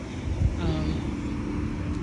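Low, steady rumble of road traffic, with a single low thump about half a second in.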